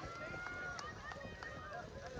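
Footfalls of a pack of cross-country runners passing close on grass, with faint distant shouts of spectators cheering.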